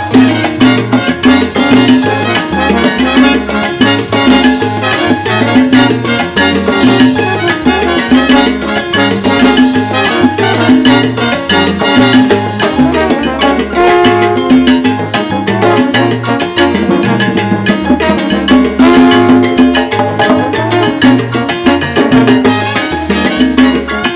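Live salsa band playing an instrumental passage with no vocals: timbales, congas and keyboard over a steady bass line and beat.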